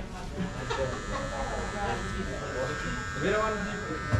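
Cordless electric hair trimmer buzzing steadily as it trims along a sideburn, starting about half a second in.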